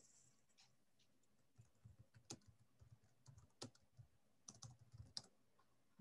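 Faint computer keyboard typing: a scattered run of light key clicks over near silence.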